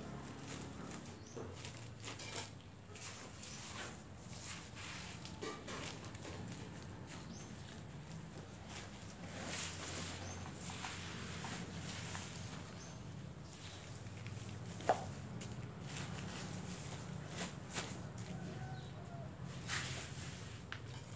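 Soft scattered rustles and crackles of potting soil being pressed by hand around a cutting in a plastic polybag, with one sharp click about three-quarters of the way through, over a steady low hum.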